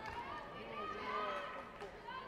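Raised voices calling out indistinctly in a large hall, one held high call in the middle, with a short sharp knock near the end.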